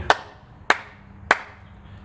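Three single hand claps about 0.6 seconds apart, made as a sync marker for lining up separate video and audio recordings.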